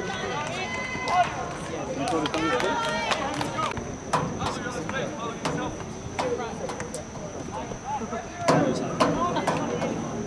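Players and spectators at a soccer game shouting and calling out, with a few high held calls in the first few seconds. A few sharp knocks of the ball being kicked, the loudest one about eight and a half seconds in.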